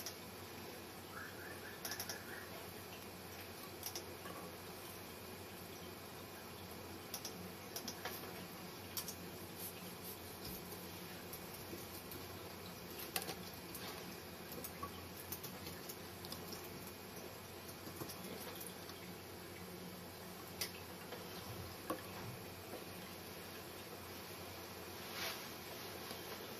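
Quiet, steady background hiss with scattered small clicks and taps from hands working thread and dubbing on a fly-tying vise.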